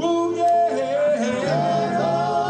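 Music: a male vocal group singing in harmony over instrumental backing, in an old-school R&B style, with held notes.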